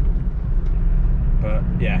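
A car's engine and road noise heard from inside the cabin while driving: a steady low drone.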